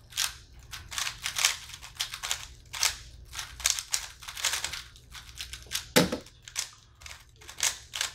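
Two 3x3 speed cubes being turned rapidly by hand: a fast, irregular clatter of plastic clicks from the turning layers. About six seconds in there is one louder hit as one solver slaps his stackmat timer to stop it.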